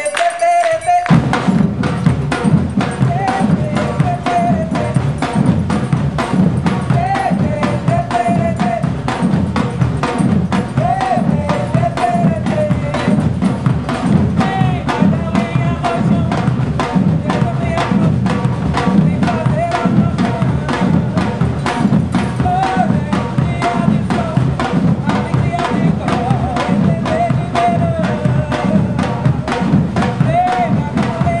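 Brazilian percussion ensemble drumming in unison: deep surdo bass drums under many fast, sharp stick strokes on smaller drums. The full drum section comes in hard about a second in and keeps up a dense, driving rhythm.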